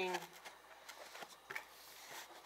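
Faint handling of a cardboard coin box: a few light taps and rustles as a hand works the box lid.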